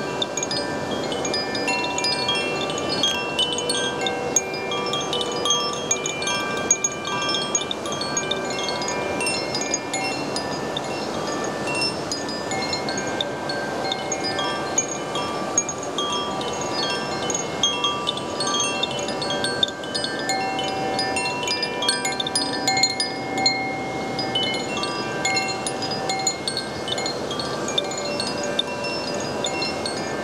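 Koshi chime, a bamboo tube with tuned metal rods struck by an inner clapper, swung by hand on its cord. It rings in a continuous run of overlapping bright tones over a steady background rush.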